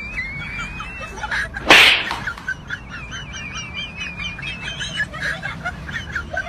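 Warbling, bird-like chirping whistles that wobble up and down in pitch, with one loud, sudden hissing burst a little under two seconds in.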